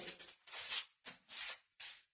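Four quick airy swishes as Krabi Krabong practice swords are swung through the air during a dual-sword form.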